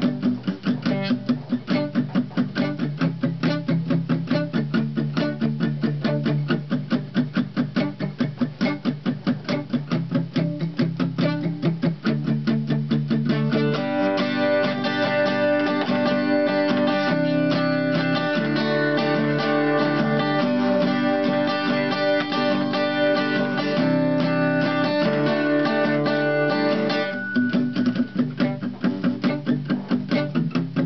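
Solo acoustic guitar played with fast, even strokes. About halfway through, the playing turns fuller and more ringing, then returns to choppier strumming near the end.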